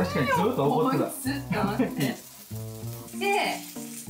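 Takoyaki batter sizzling in an electric takoyaki plate as the balls are turned with skewers, under background music with long held notes and voices.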